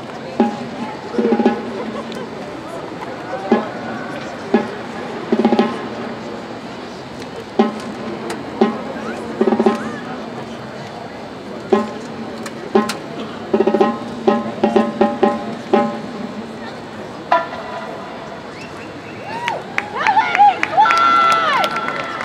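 Marching band drumline playing a sparse marching cadence: clusters of drum strikes and short rolls about a second apart. Near the end a held tone sounds, then voices shouting.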